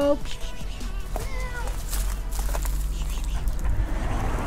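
A cat meowing once, a short call about a second in that rises in pitch, holds and falls away.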